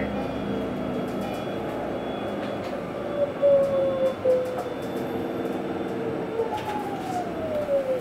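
Proterra ZX5 battery-electric bus heard from inside the cabin: the electric drive motor whines at a steady pitch over road and cabin rattle, with a couple of knocks, then the whine falls steadily in pitch near the end as the bus slows for a stop.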